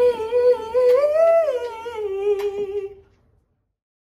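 A woman's solo voice singing a long wordless note, humming or a closed vowel, that climbs in pitch about a second in and eases back down, then fades out about three seconds in, after which the sound cuts to silence.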